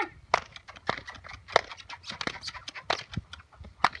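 A pony trotting with a rider: an irregular run of sharp clicks and knocks from its hooves and saddle tack, about two or three a second.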